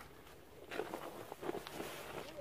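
Quiet rustling and shuffling of tent fabric and bedding as someone climbs into a dome tent. It starts about two-thirds of a second in as a string of irregular scrapes.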